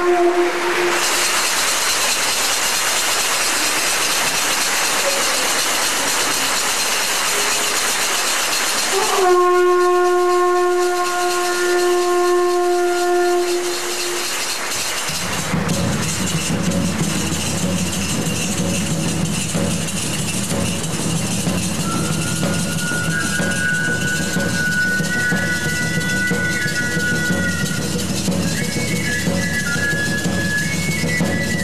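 Electronic keyboard through an amplified sound system: two long held notes over a steady hiss, the second scooping up into its pitch. About halfway a low sustained drone comes in under a slowly moving high melody.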